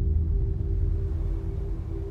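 Horror trailer sound design: a deep rumbling drone, slowly fading, with two steady held tones above it.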